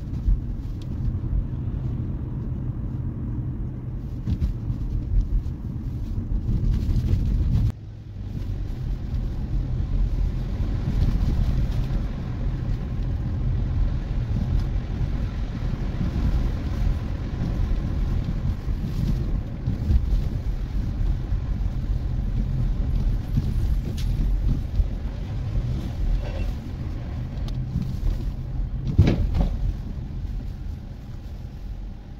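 A car driving through city streets, heard from inside the cabin: a steady low engine and road rumble. It dips sharply for a moment about eight seconds in and swells briefly near the end.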